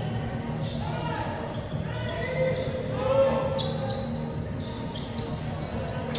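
Live court sound of a professional basketball game in a near-empty arena: the ball bouncing on the hardwood floor, with scattered player shouts over a steady low hum of the hall.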